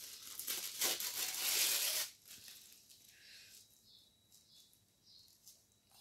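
Thin paper napkin being torn and crinkled by hand: a loud rustling tear for about two seconds, then a few faint rustles.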